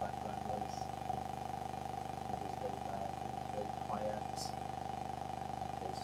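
A steady electrical hum with hiss, and faint speech fragments under it: a degraded audio feed from a microphone whose battery has run down.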